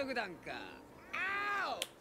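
Japanese anime voice acting playing quietly from the episode. About a second in, a high-pitched character's voice gives one drawn-out line that rises and then falls in pitch.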